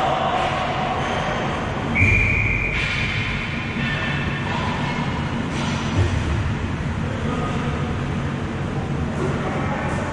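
Ball hockey game sounds echoing in a large arena hall: a steady rumble of play and room noise, with a sharp knock about two seconds in, a short high steady tone right after it, and another knock about six seconds in.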